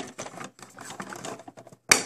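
Small plastic clicks and rattles of a Playmobil toy wheelie bin being fitted onto the refuse truck's tipper bracket, with one sharper click near the end as the bin clips on.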